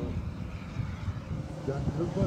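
Low, distant engine rumble from a Subaru Impreza rally car as it drives away down the gravel stage and fades out. A spectator's voice starts near the end.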